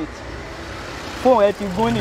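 A man's voice, pausing for about a second and then speaking again, over a steady rumble of vehicle engine and traffic noise.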